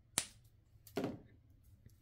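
A plastic fashion doll and its small accessories being handled: a sharp click about a fifth of a second in, then a duller knock about a second in.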